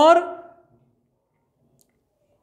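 A man says one word ("aur", Hindi for "and"), followed by a pause of near-quiet room tone, with a faint click near the end.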